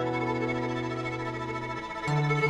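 An acoustic guitar chord left ringing while a fiddle plays a long bowed line over it, with no new strums until the chord changes at the end.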